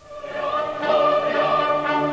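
Choral music with orchestra fading in: a choir holding sustained chords, swelling over the first second.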